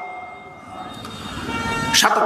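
A short pause in an amplified sermon, filled by faint, steady ringing tones from the public-address system that grow louder near the end.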